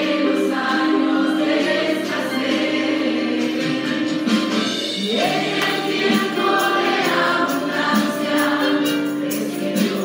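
Christian gospel choir singing over instrumental accompaniment, with a steady percussion beat coming through more clearly in the second half.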